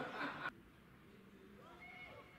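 Players' voices calling out across a football pitch, cut off abruptly about half a second in. Fainter short calls follow near the end.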